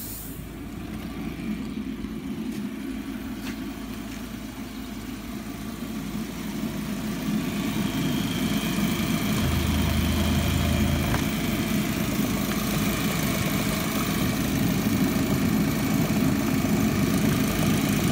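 Volkswagen Passat B5 engine running steadily, growing gradually louder from about six seconds in, with a faint high whine joining it.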